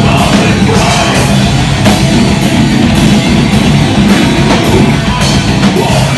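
A metalcore band playing live and loud: distorted guitars, drums with frequent cymbal and snare hits, and a vocalist on the microphone.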